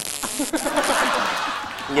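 Comic electric-zap sound effect: a hiss of static that fades out after about a second and a half, with chuckling voices underneath.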